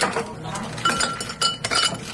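Ice cubes dropped by hand into tall drinking glasses, clinking and ringing against the glass and each other. There is one clink at the very start, then a quick run of clinks through the second half.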